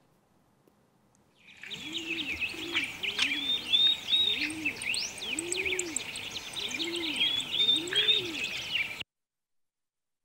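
Recorded birdsong: small birds chirping over a low cooing call that repeats about once a second, typical of a dove. It starts about a second and a half in and cuts off suddenly near the end.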